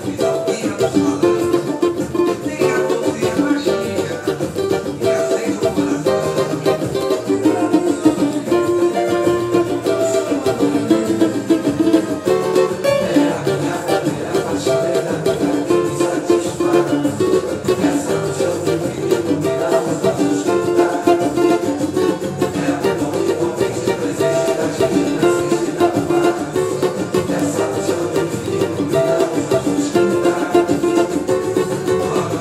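Cavaquinho strumming chords in a steady, driving pagode rhythm, moving through an F, D7, Gm and C7 chord progression.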